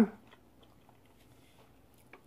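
Faint chewing: a few soft, scattered mouth clicks as a breaded fish sandwich is eaten.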